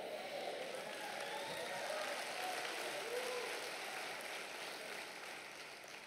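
A large congregation applauding, with a few voices calling out over the clapping. The applause holds steady, then fades away near the end.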